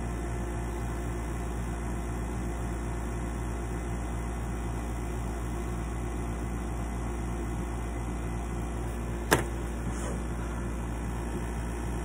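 A steady low machine hum with a faint regular pulse, and one sharp click about nine seconds in.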